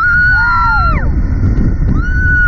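Riders screaming as a slingshot ride flings them upward. A long high scream is held for about a second and then falls away, with a second, lower voice rising and falling under it, and another high scream starts near the end. Wind rumbles on the ride-mounted microphone throughout.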